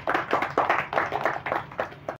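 A small audience clapping: a quick, uneven run of claps.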